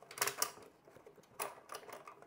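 Hard plastic clicking and rattling as spool roller parts are fitted into the filament dryer's plastic tray. There is a quick cluster of clicks a fraction of a second in and another about a second and a half in.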